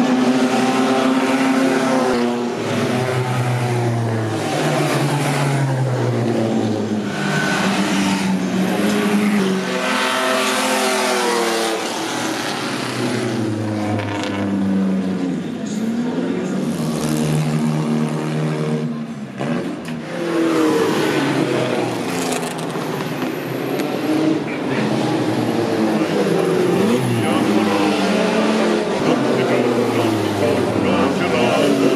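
Bugatti Type 35 racing cars' straight-eight engines accelerating hard past one after another. Each engine's pitch climbs and drops again at the gear changes.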